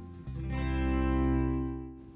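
Background music: one sustained chord that swells up and fades away.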